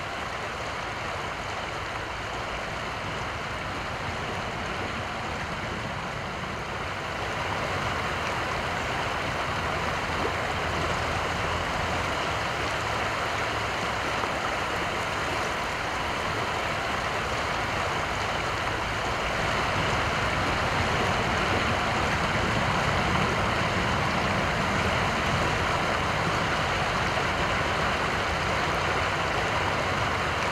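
Steady rush of flowing creek water, a smooth hiss with no distinct splashes, growing louder in steps about seven seconds in and again around twenty seconds.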